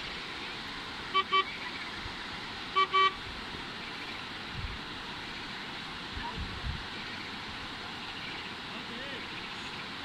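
Car horn sounding two quick double beeps, about a second in and again about three seconds in, over a steady background hiss.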